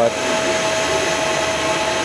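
Steady whirring hum of running machinery: an even hiss with one constant tone held through it, unchanging throughout.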